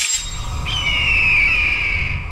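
A bird-of-prey screech sound effect: one long cry falling in pitch, starting just over half a second in, over a low cinematic rumble that follows a sudden hit at the start.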